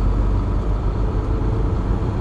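Semi truck's diesel engine and road noise heard inside the cab while driving: a steady low drone with a faint hum above it.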